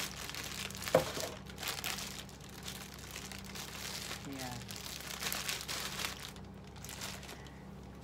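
Crinkling and rustling of a thin clear plastic bag wrapped around a laptop charger as it is handled and turned over in the hands, in irregular crackles.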